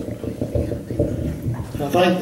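Indistinct, muffled voices without clear words, with a sharp knock at the start.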